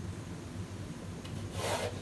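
Chalk scraping on a blackboard in one short stroke about one and a half seconds in, over a steady low hum.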